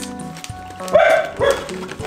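Background music with a steady tone, and a dog barking twice in quick succession about a second in.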